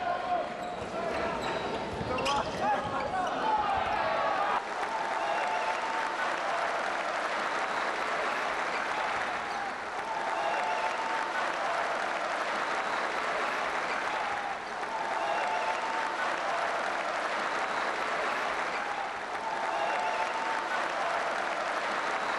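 Crowd in a large indoor handball arena: a steady noise of many voices, with a chant swelling about every four to five seconds. In the first few seconds a handball bounces and thuds on the wooden court during play.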